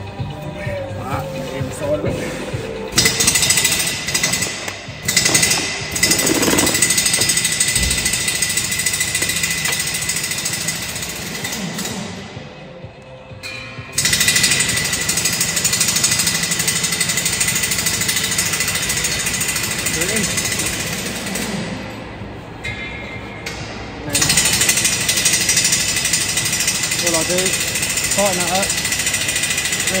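Pneumatic air tool in a truck workshop running in three long bursts of several seconds each, starting and stopping abruptly, during brake caliper and pad work on a truck axle.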